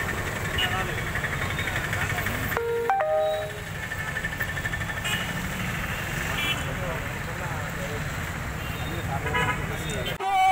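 Street ambience of a town road: a steady rumble of traffic and scattered voices, with a short vehicle horn honk about three seconds in.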